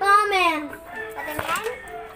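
A child's high-pitched, drawn-out vocal cry that falls in pitch, followed by quieter voices and a short knock about a second and a half in.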